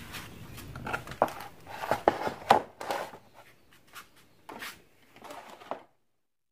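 Irregular light clicks and knocks of handling, several short sharp ones spread over the first few seconds, then the sound cuts off to dead silence shortly before the end.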